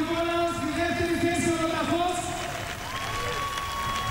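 Stadium crowd applauding and cheering, under sustained pitched sounds that waver slowly. A steady higher tone comes in about three seconds in.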